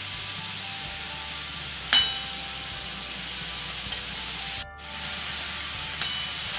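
Grated pumpkin sizzling gently in ghee in an aluminium kadhai, a steady hiss, with one sharp metallic clink of a steel spoon against the pan about two seconds in. The sound drops out briefly near the five-second mark.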